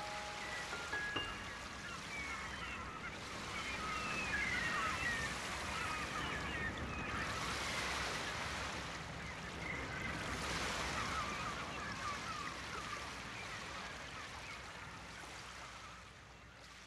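River water washing against the shore, a steady noise, with many short chirping calls scattered over it; the sound fades gradually near the end.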